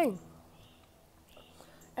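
The end of a woman's spoken exclamation, then near silence: faint, even background with a low hum.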